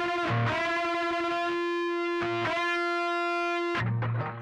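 Distorted electric guitar in C standard sustaining a unison bend: the second string, fretted at the eighth fret, is bent up to match the first string's fifth-fret F, the root, and the two sound as one steady note. A few brief low thumps come under it, and the note stops just before the end.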